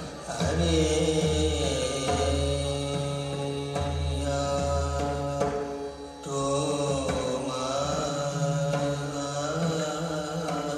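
Recorded Indian semi-classical song playing: a drawn-out sung vocal line that bends slowly in pitch over a steady low drone, with a short drop in level a little past the middle.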